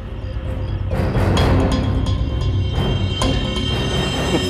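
Suspenseful background score with a heavy low rumble and held tones, swelling about a second in.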